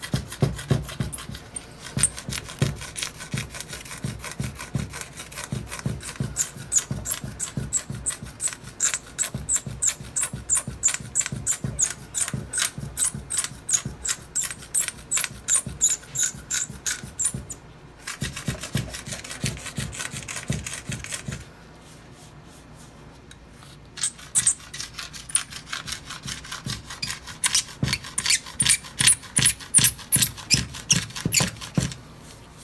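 A single razor blade scraping the excess cured UV stone-repair compound off a granite slab in quick, repeated strokes, levelling the filled chip flush with the stone. The scraping stops briefly twice, the longer lull about two-thirds of the way through.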